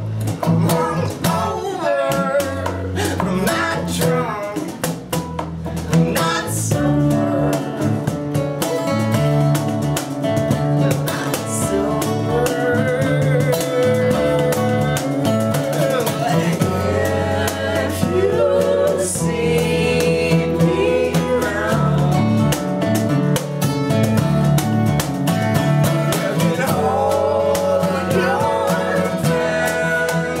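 Live acoustic folk band playing a song: strummed acoustic guitars over a violin-style bass guitar and a cajon, with male vocals singing over them.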